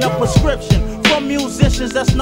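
Hip hop track: a rapper's voice over a drum beat with regular kick and snare hits.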